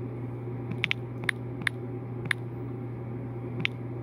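About half a dozen short, sharp taps at irregular intervals on a smartphone touchscreen while typing on its on-screen keyboard, over a steady low hum.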